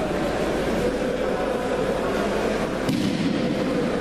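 Steady din of a large crowd, many voices blended together with no single voice standing out, and a short sharp knock about three seconds in.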